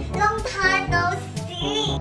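A high, sing-song voice calls out a greeting over background music.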